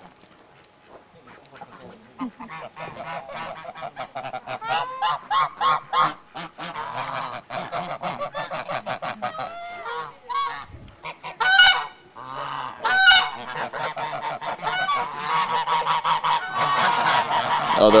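A flock of domestic geese honking, many calls overlapping. It starts quiet, then the calls grow denser and louder. Two loud single honks stand out in the middle, and a dense chorus builds near the end.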